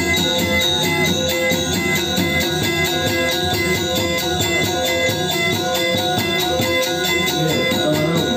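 Balinese gamelan playing: metallophones ringing in a fast, even pulse of repeated notes.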